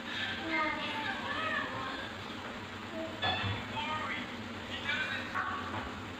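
Faint background voices, high-pitched like children talking and playing, with no cooking sound standing out.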